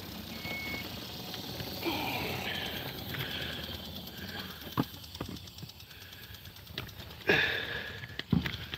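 Handling noise from a phone being picked up and moved: scattered knocks and rubbing over a low outdoor background, with a louder rustle near the end.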